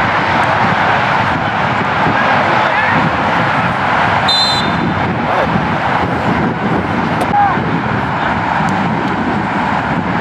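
Steady outdoor rush on the microphone at a soccer match, with distant shouts from players and a short, high whistle blast about four seconds in as a player goes down, likely the referee stopping play for a foul.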